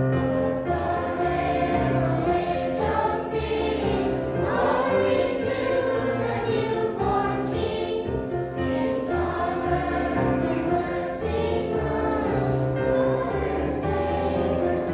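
Children's choir singing a song together, holding notes over low instrumental accompaniment.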